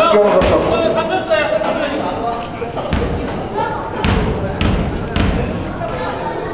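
A basketball bounced on a hardwood gym floor: four dribbles in the second half, the last three about half a second apart, typical of a free-throw shooter's pre-shot bounces. Men's voices can be heard in the first couple of seconds.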